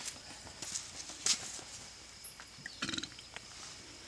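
A goat bleats once, briefly, about three seconds in.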